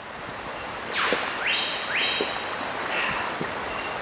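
Steady rushing noise of river rapids. About a second in comes a falling whoosh, followed by two short rising sweeps.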